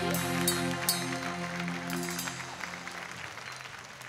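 A live band's final sustained chord ringing out and fading away, with audience applause starting up underneath it as the song ends.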